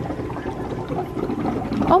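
Air bubbling hard through the water in brine shrimp hatchery cones, fed by an aquarium air line through small valves: an irregular, busy gurgling of small pops.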